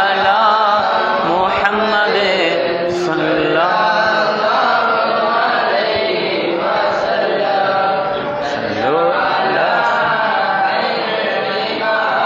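Men's voices chanting Arabic Mawlid verses in praise of the Prophet, unaccompanied, in long melismatic lines whose pitch winds up and down.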